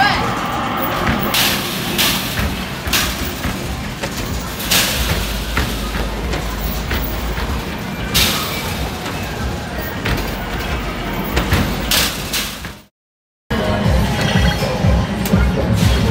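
Basketballs thudding against the backboards and rims of arcade hoop-shooting machines, a sharp knock every second or few seconds, over a loud arcade din of music and voices. Briefly cuts out about 13 seconds in.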